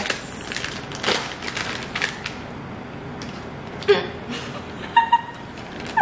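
Foil-lined snack bag crinkling as it is torn open, in a dense run of sharp crackles over the first two seconds or so, sparser afterwards.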